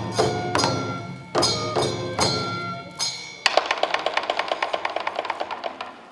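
Folk-dance percussion ensemble of taiko drums and ringing metal percussion playing separate accented strikes, then breaking into a fast roll of about six or seven strikes a second that fades out near the end, closing the piece.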